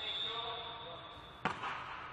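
A referee's whistle blown once, one steady high note held for about a second and a half, signalling the serve. It is followed by the sharp smack of a volleyball being struck on the serve, echoing in the gym hall.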